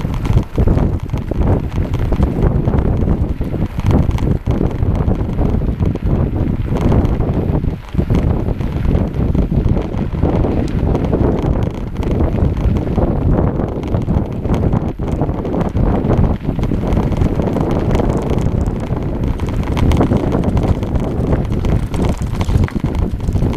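Wind rushing over the microphone of a cyclist's action camera while riding a rough dirt and gravel track, with tyre rumble and frequent short jolts and rattles from the bumpy surface.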